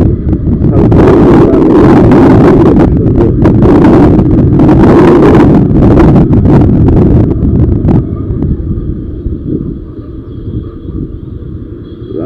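Motorcycle riding at speed: heavy wind buffeting on the microphone over the engine and road noise. About eight seconds in the wind noise drops sharply, leaving a quieter low running rumble with a faint steady high tone.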